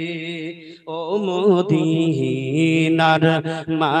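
A man singing a Bengali Islamic devotional song about Medina into a microphone: long held notes with a wavering pitch, broken by a short breath about three-quarters of a second in.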